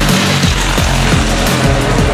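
Drum-and-bass background music with a fast, steady kick-drum beat under a dense, noisy upper layer.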